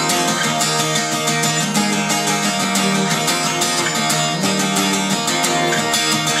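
Steel-string acoustic guitar strummed in a steady, even rhythm, full chords ringing on.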